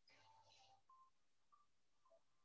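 Near silence: a pause in the call audio, with only a few very faint, brief tones.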